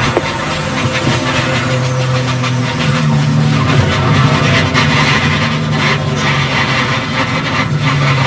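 Onboard sound of a NASCAR Busch Series stock car's V8 running loud and steady under heavy rushing noise as the car runs into a crash, with scattered crackles and knocks of flying debris and crumpling bodywork in the second half.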